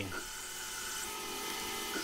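Hercus PC200 benchtop CNC lathe running a program, its spindle turning a tiny brass bush, with a steady high whine over the machine noise.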